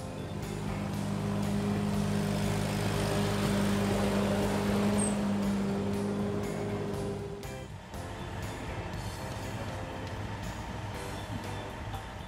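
Ride-on lawn mower engine running steadily as it passes, growing louder towards the middle and fading out about seven to eight seconds in, followed by a quieter, steady hum.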